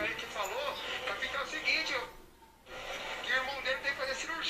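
Soft speech over background music, with a brief pause a little past two seconds in.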